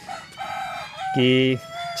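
A rooster crowing in the background: one long call that carries across the whole stretch, with a man's single short word partway through.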